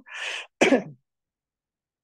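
A man's single explosive expulsion of breath, a cough or sneeze: a short breathy rush, then one sharp burst, then silence.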